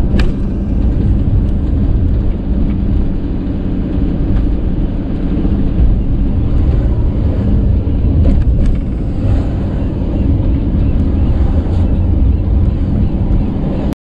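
Road and engine noise of a van driving at a steady speed, heard from inside the cabin: an even low rumble. A few sharp clicks cut through it, one just after the start and others about two-thirds of the way through.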